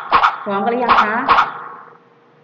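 A dog barking: three short, loud barks, over a woman speaking.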